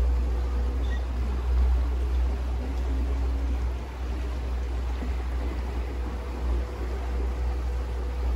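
A small canal boat under way: a steady low rumble with an even wash of water noise.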